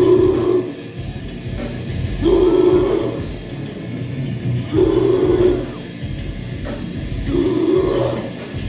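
Live heavy metal band playing loud, with a heavy phrase that hits again about every two and a half seconds.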